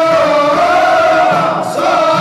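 Aissawa Sufi chant: a chorus of men singing together over the beat of bendir frame drums, dipping briefly near the end.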